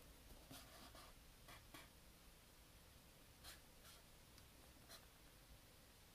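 Near silence with a few faint, brief ticks and rustles of fingers handling the open paper pages of a hardcover book.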